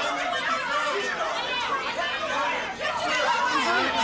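A crowd of voices talking over one another, with no single voice clear.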